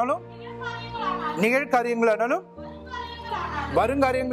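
High voices sing sliding 'ah' sounds in short phrases, each rising and then falling in pitch, over sustained held notes of music.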